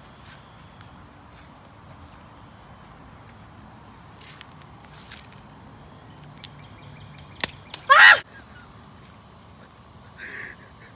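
Faint steady outdoor background with a thin, high, steady whine. A little after seven seconds come two sharp clicks, then a short, loud cry that bends in pitch.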